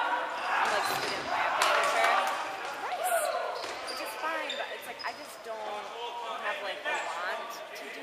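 Dodgeballs bouncing and smacking on a hardwood gym floor in a fast rally, several sharp hits scattered through the moment, over players shouting in an echoing gymnasium.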